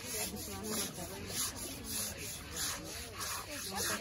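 A young elephant's wet hide being scrubbed at bath time, a steady rhythmic rubbing at about three strokes a second, with faint voices underneath.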